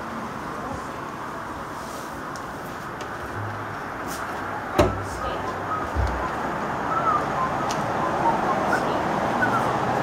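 Guitar being set down on its stand: a sharp knock about five seconds in and a low thump about a second later, over a steady outdoor background with faint voices.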